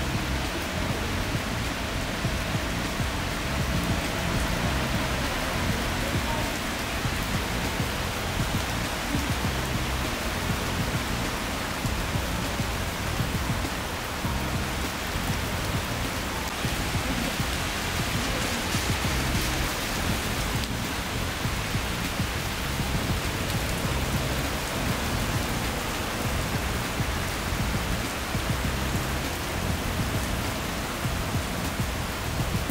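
Heavy rain pouring steadily onto a paved street, a dense even hiss with no let-up, with background music underneath.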